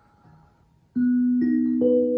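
Array mbira playing: metal tines plucked one after another starting about a second in, three notes in quick succession, each ringing on and overlapping the next.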